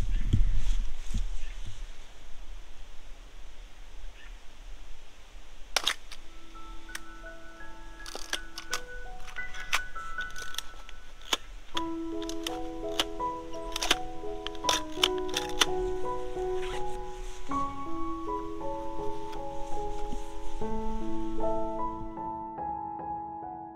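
Mechanical clicks of a Mamiya RB67 medium-format film camera being worked by hand, over wind rumble on the microphone. Gentle piano-like music comes in about seven seconds in and grows fuller from about twelve seconds.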